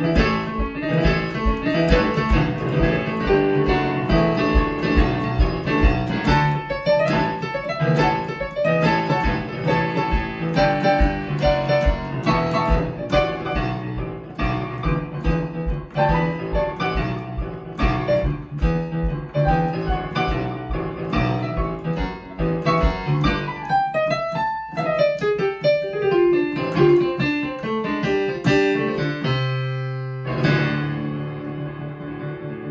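Digital stage piano playing up-tempo boogie-woogie blues, with a steady driving left-hand bass under right-hand riffs. About 23 seconds in the bass drops out and the right hand plays falling runs down the keyboard, leading to a held chord at the end.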